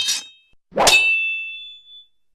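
Metallic blade-clash sound effects: the tail of a quick clash at the start, then one sharp clang about a second in that rings on with a high, bright tone fading out over about a second.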